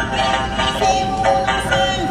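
Chinese opera singing: a woman's voice holding long notes over a traditional instrumental accompaniment, with a few sharp percussion clicks.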